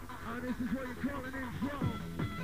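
A voice over a hardcore rave mix on an early-1995 tape recording, wavering in pitch, with the fast kick drum coming back in near the end.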